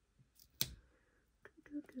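A sharp click about half a second in, then a few light ticks, from fingers peeling and pressing a paper planner sticker on its sheet. Near the end a woman starts humming.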